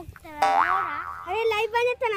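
A comic 'boing' sound effect with a wobbling, rising-then-falling pitch about half a second in, followed by a voice.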